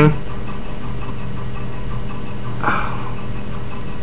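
Steady low background hum with constant noise, and one faint short hiss a little past the middle.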